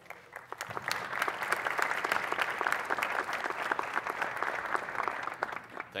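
Audience applauding with dense hand claps. The applause builds over the first second and tapers off near the end.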